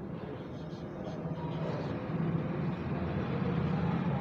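A motor vehicle's engine running with a low rumble that grows steadily louder.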